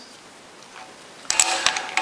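A quick cluster of small hard clicks and taps from a ceramic TIG cup and brass gas lens being picked up and handled on a bench top, starting after about a second of near-quiet room tone.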